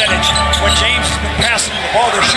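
Basketball being dribbled on a hardwood court with short high sneaker squeaks during live play, over steady arena music with a sustained low bass.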